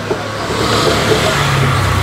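Steady rushing background noise with faint, indistinct voices in it, and a low steady hum coming in near the end.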